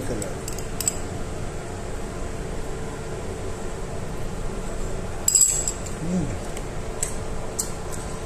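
Metal spoon clinking and scraping against a small glass bowl as cucumber salad is scooped into it, with a few light clinks near the start and the loudest clink about five seconds in. A brief voiced hum follows about a second later, over a steady background hum.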